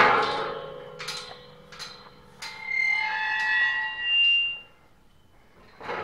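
Steel pipe gate and its welded latch ringing after a metal clang, then a few sharp metal clicks as the latch is worked. After these comes a couple of seconds of sustained high squealing tones that change pitch, then it goes quiet.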